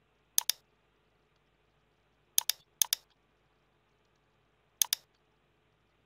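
Computer mouse button clicked four times, each a sharp press-and-release pair of ticks: once about half a second in, twice in quick succession around two and a half to three seconds, and once near five seconds.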